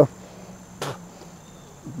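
A quiet pause filled with a faint, steady, high-pitched chirring of insects, with one short snap about a second in from a footstep in dry brush.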